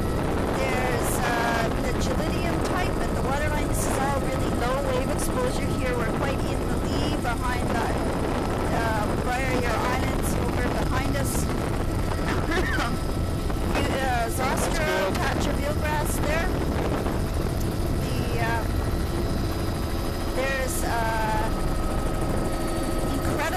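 Steady helicopter noise heard from inside the cabin, an even low drone that never changes, with snatches of muffled speech coming and going over it.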